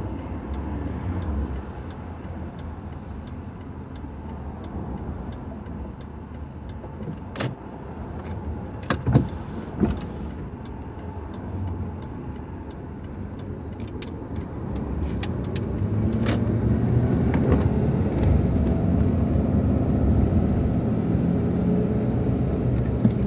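Car cabin noise while driving: a steady low rumble of engine and tyres, with a few sharp clicks along the way. The rumble grows louder about three-quarters of the way through.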